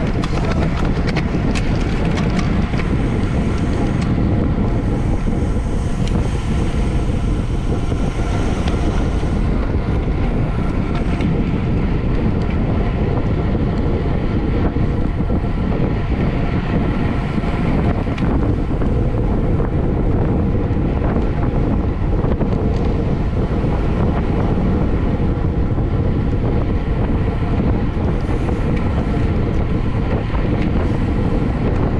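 Steady wind noise rushing over the microphone of a camera on a racing bicycle moving at speed, heaviest in the low end, with road and riding noise underneath.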